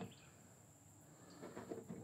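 Near silence: faint outdoor background with a steady high-pitched tone, and a faint tap near the start.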